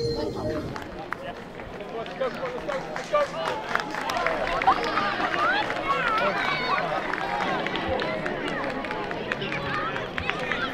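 Several voices calling and shouting over one another across an open football pitch, none clear enough to make out, with a few sharp knocks among them.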